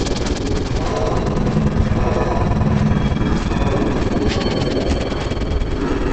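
Heavily distorted, effects-processed soundtrack of an Oreo TV commercial: a loud, harsh, dense wash of music and noise, with a rapid flutter in the first second.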